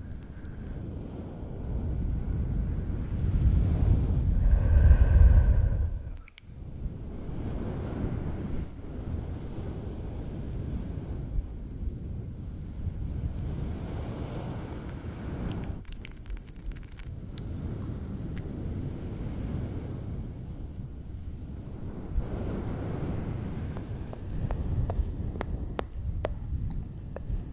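Fingers rubbing and stroking a fluffy fur microphone windscreen up close: a low rumbling rush that swells and fades, loudest about four to six seconds in, with a few brief crackles later on.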